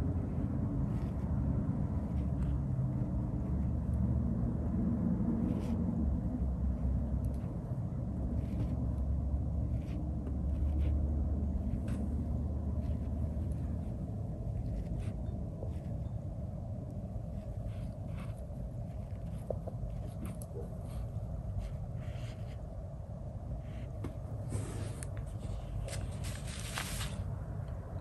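Steady low background rumble, with scattered faint clicks and light taps that come more often near the end.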